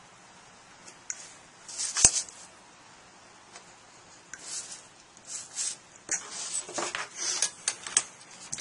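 Hobby knife blade cutting through thin cardstock in short scratchy strokes, with one sharp tap about two seconds in; the strokes come more often toward the end as the card is handled.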